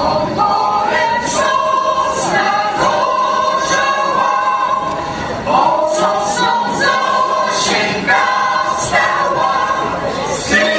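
Mixed folk choir of men and women singing a Polish folk song unaccompanied, with sustained notes throughout.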